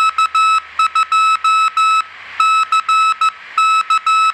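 A single high-pitched beep tone keyed on and off as Morse code, in short dots and longer dashes grouped into characters with brief gaps between them.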